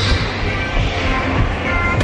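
Steady, loud rumbling din of an indoor go-kart venue with karts running on the track, and background music faintly under it.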